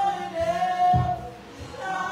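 Voices singing long held notes in church-style worship singing, with a few low drum thumps underneath.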